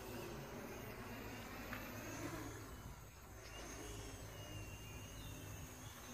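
Distant 3D-printed F450-clone quadcopter in flight, its four 1000KV brushless motors and 10-inch propellers giving a faint, steady buzz over a low rumble.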